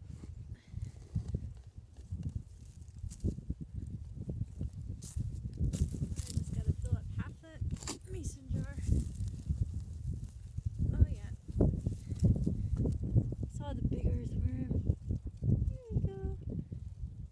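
A steel spade being pushed into grassy turf by a boot, with several sharp crunching cuts through roots and soil, over a steady low rumble of wind on the microphone.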